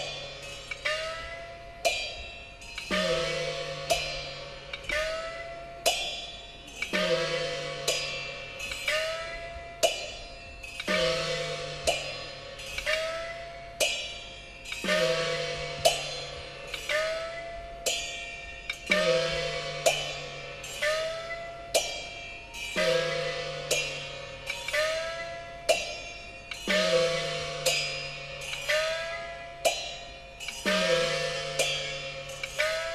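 Peking opera gong-and-cymbal percussion (luogu) playing a steady repeating pattern: small gong strokes about once a second with a rising pitch, cymbal crashes, and a larger gong whose pitch falls, struck every few seconds.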